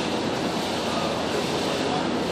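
A steady rushing noise, even and unbroken, with faint indistinct voices beneath it.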